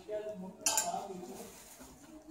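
A sharp metallic clink about two-thirds of a second in, ringing briefly as it fades: a clothes hanger knocking against a metal clothing rail.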